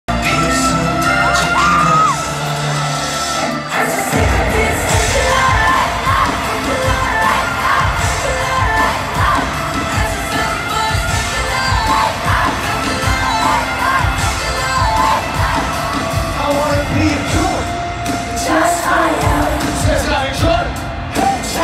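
Live concert sound in a stadium: a singer's amplified voice over backing music, with a driving beat coming in about four seconds in, and the crowd cheering and singing along.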